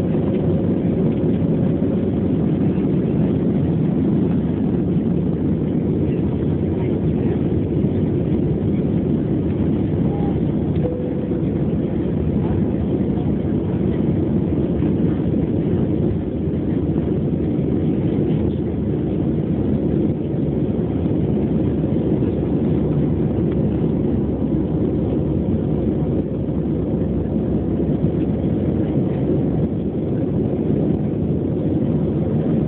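Jet engine and airflow noise inside the cabin of an Airbus A320-family airliner at takeoff power, through the takeoff roll, lift-off and initial climb: a steady, low-pitched, dense noise that holds its level throughout.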